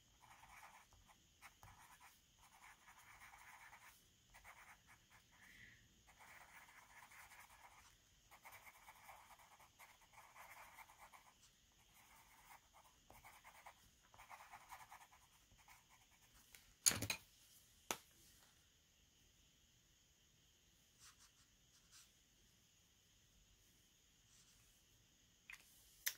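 Faint scratching of a coloured pencil shading on paper in short repeated strokes, stopping about fifteen seconds in. Two light knocks follow, about a second apart.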